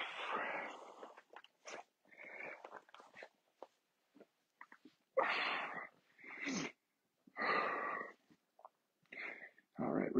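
A man breathing heavily, about six loud, rushing breaths of up to a second each, spaced a second or two apart.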